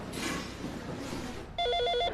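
Electronic desk telephone ringing: a fast warbling trill of two alternating tones that starts about one and a half seconds in, after a faint hush.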